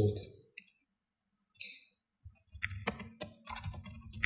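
Computer keyboard keys clicking in a quick run of taps, starting a little past halfway.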